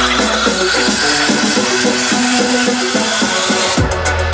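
DJ mix played live on turntables and mixer through the sound system: repeated short notes over a beat. About a second and a half in the deep bass drops out while a hissing build-up rises, and the heavy bass comes back in right at the end.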